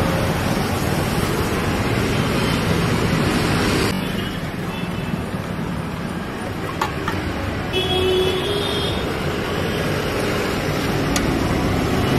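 Steady traffic noise that drops a little about four seconds in, with a brief higher tone, like a horn, about eight seconds in.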